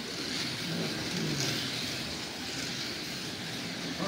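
Several slot cars running laps on a multi-lane track: the high whine of their small electric motors, the whine of one car rising and falling about a second and a half in.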